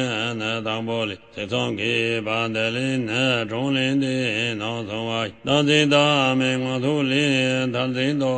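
A Tibetan lama's voice chanting a Buddhist tantra in Tibetan: a fast, continuous recitation held on a nearly unchanging pitch, with short breaths about a second in and again about five seconds in.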